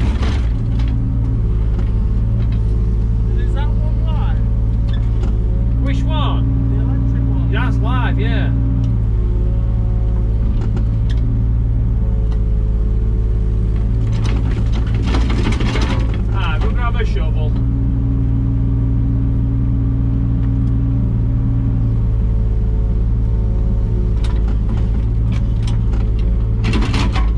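JCB 3-tonne mini excavator's diesel engine running steadily, heard from inside the cab, with a higher hum coming in twice for a few seconds as the hydraulics work the arm and bucket.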